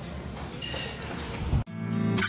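Restaurant room noise, a steady low hum with faint scattered clatter, cut off suddenly near the end as strummed acoustic guitar music begins.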